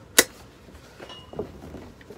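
A single sharp plastic click near the start as the Rowenta Perfect Steam steam-generator iron is gripped by its handle, then faint handling sounds as the heavy unit is lifted and turned.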